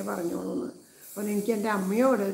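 A woman speaking in a storytelling voice, with a brief pause of about half a second near the middle.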